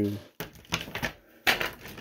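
A few light plastic clicks and taps as an action figure is picked up and handled, in two short clusters about a second apart.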